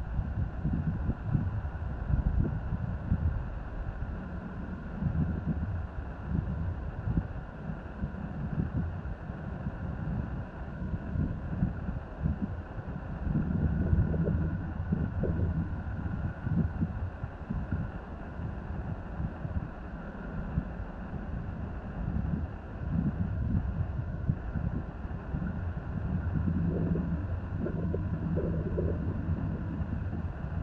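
Wind buffeting the microphone in uneven gusts, over a faint steady low drone of a distant engine.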